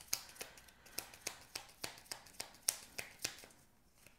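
Tarot cards being shuffled by hand, a run of light clicks and slaps about three a second as the cards drop from hand to hand, stopping near the end.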